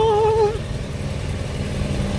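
Steady low rumble of a car heard from inside the cabin: engine and road noise. It opens on the tail of a long held sung note, which stops about half a second in.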